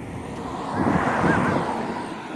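A vehicle passing by: its noise rises to a peak about midway, then fades. A few faint short squeaks sound at the loudest point.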